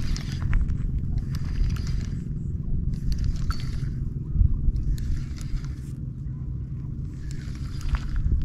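Spinning reel being cranked in short spurts, its gears and line roller whirring and clicking with each burst of turns, over a steady low rumble of wind on the microphone.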